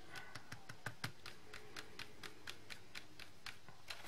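Foam-tipped stylus tool dabbing dye ink onto glossy cardstock: a run of light, quick taps, about four or five a second, quiet and uneven.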